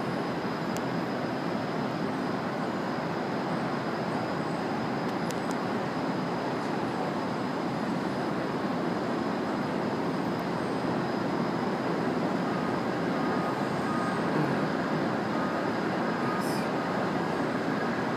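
Steady roar of Manhattan street traffic heard from high above the avenue: an even, blended din with no single vehicle standing out.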